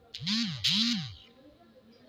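A person's voice making two short wordless sounds in the first second, each rising then falling in pitch.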